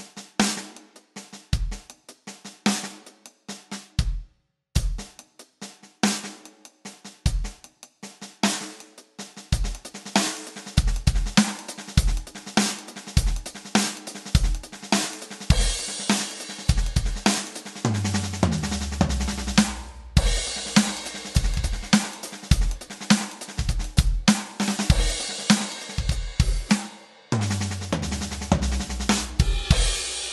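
Roland electronic drum kit played in a paradiddle-diddle groove: hands split between hi-hat and snare with a bass drum kicking underneath. It starts sparse, stops briefly about four seconds in, then fills out from about ten seconds with more cymbal. Two runs of falling low drum notes come near the middle and near the end.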